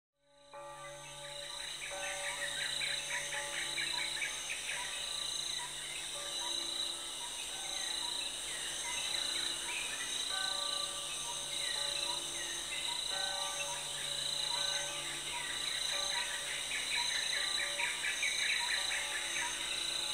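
Intro soundtrack of a nature soundscape: a steady high chorus of insects with birds chirping over it, layered with soft held music notes that change every second or two.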